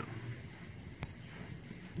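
A single sharp click about a second in, with a few faint ticks later, from steel tweezers knocking against a brass lock cylinder while they probe for a stuck pin.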